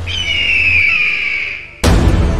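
Logo intro sound effect: a high, slightly falling whistling tone that fades out over a low bass, then a sudden heavy impact with deep bass just before the end.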